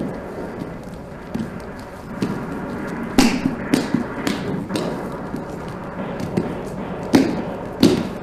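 Bare feet stamping and thudding on a stage floor in dance footwork: scattered soft taps, then a quick run of about four hard stamps a little after three seconds in, and two more near the end.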